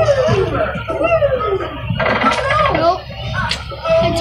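Amusement arcade din: game-machine music and jingles mixed with voices, loud throughout, with a buzzier electronic stretch from about two seconds in.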